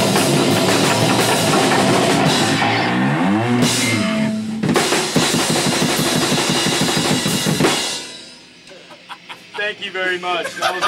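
Rock band playing live on drum kit, electric bass and guitar. About five seconds in comes a run of fast, even drum hits, about seven a second, and the song stops abruptly near eight seconds. A short lull follows, then voices near the end.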